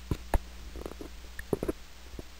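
A few short clicks and knocks: two sharper ones in the first half-second, fainter ones near the middle and a quick cluster about a second and a half in, over a steady low hum.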